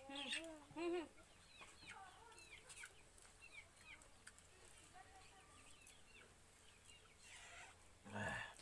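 Chickens clucking faintly: a few short calls in the first second, then scattered softer calls.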